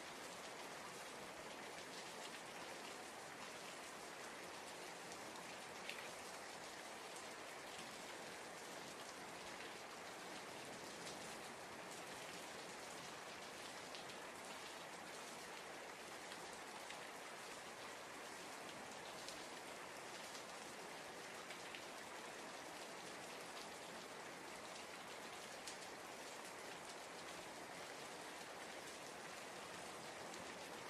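Soft, steady rain falling, an even hiss with a few faint drop ticks scattered through it.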